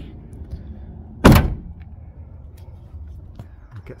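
A single loud thunk about a second in, a door or hatch on a Peugeot Partner/Citroen Berlingo van being shut.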